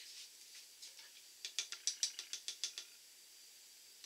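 Quick disconnect on a beer line being worked onto a soda keg's post. A fast run of about a dozen small, sharp clicks over a second or so.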